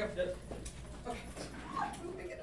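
Faint voices off the microphone, with a short "oh" about a second in and a brief rising vocal sound near the end.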